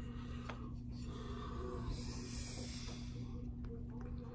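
Faint handling noise and light clicks from hands working on a bare chainsaw engine, over a steady low hum.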